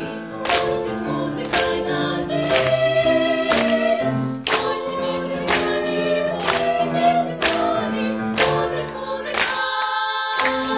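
A girls' vocal ensemble singing in harmony to piano accompaniment, with a regular beat about once a second.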